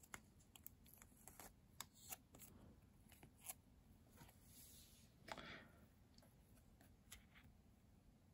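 Faint handling sounds of a trading card being pushed into a plastic card sleeve: scattered soft clicks and a brief rustle about five seconds in, over near silence.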